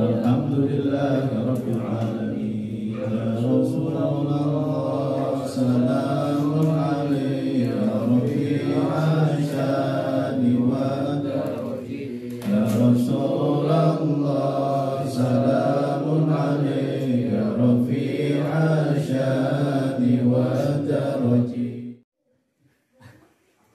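Group of men chanting a prayer together in unison, a continuous sustained melodic chant led over a microphone. It cuts off suddenly at the end.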